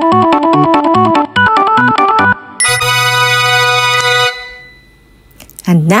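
Background music: a quick, bouncy electronic keyboard tune of short repeated notes. About two and a half seconds in it ends on a long held chord, which fades out to quiet. A woman's voice starts right at the end.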